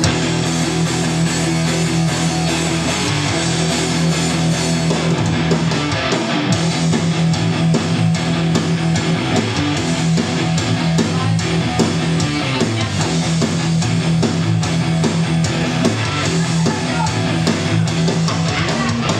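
Electric guitar played live with a rock band, bass and drums under it, in a loud instrumental passage without singing.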